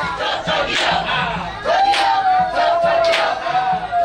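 A crowd of young men shouting and yelling to hype up a dancer, many voices overlapping. About two seconds in, one voice holds a long, drawn-out yell that falls slightly in pitch to the end.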